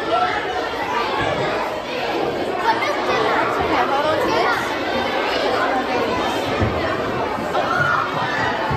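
Many children's voices chattering at once, a steady, overlapping hubbub of a busy room.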